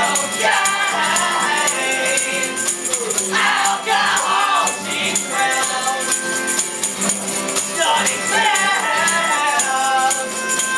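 A live band playing, with a fiddle and an accordion holding sustained notes under several voices singing the melody in phrases.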